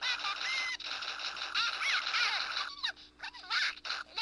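High-pitched, squawking cry-like voice sounds from a stick-figure animation's sound track played through a small device speaker, with the pitch sliding up and down in several short cries.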